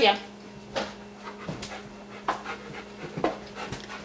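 An excited pet dog fussing close by, with short breathy panting sounds every second or so.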